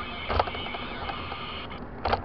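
Steady road and engine noise inside a moving car, picked up by a dashcam, with a single sharp knock about half a second in.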